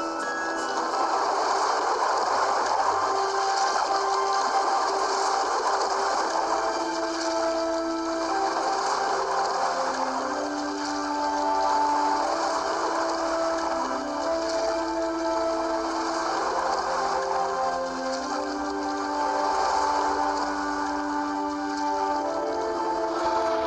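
Background music: slow, held notes moving in a gentle melody over a steady wash of noise.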